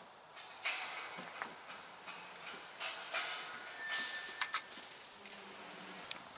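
Dry straw bedding rustling and crackling underfoot in irregular bursts, as of footsteps moving through hay.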